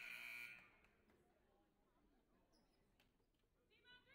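Gym scoreboard horn sounding once, briefly, for about half a second: the signal that a timeout is over.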